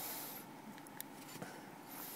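Faint handling noise: soft rubbing and a few small clicks as a small handheld device is moved about.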